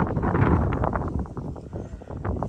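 Wind buffeting the camera microphone in gusts, a rough, uneven rumble that eases off a little near the end.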